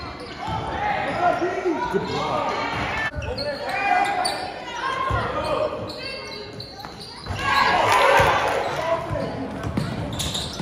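Basketball dribbling on a hardwood gym floor amid overlapping shouts and chatter from players and spectators, echoing in the large gym. The voices swell louder about three-quarters of the way through.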